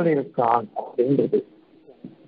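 Speech only: a man's voice speaking in short phrases with rising and falling pitch.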